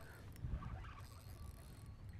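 Faint mechanical sound of a spinning reel being worked as a hooked redfish is played on a bent rod, over a steady low rumble.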